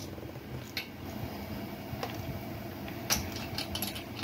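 Light metallic clicks and scrapes of a spark plug wrench being fitted onto a chainsaw's spark plug: a few single clicks, with a small cluster near the end.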